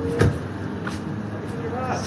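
A motor vehicle running close by over steady city traffic noise. There is a sharp knock just after the start and a fainter click about a second in.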